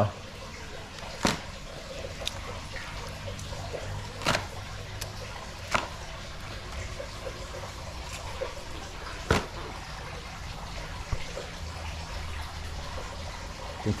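Fresh-caught fish handled on a tiled floor: about four sharp knocks a few seconds apart as fish are picked up and dropped on the tiles, over a steady low background hum with a faint trickle of water.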